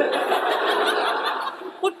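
Sitcom studio audience laughing, a swell of laughter that fades away after about a second and a half. A man starts to speak near the end.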